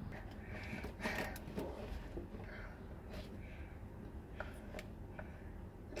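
Faint handling sounds as a sink shutoff valve is turned slowly by hand: a few light clicks and rustles over a low steady hum.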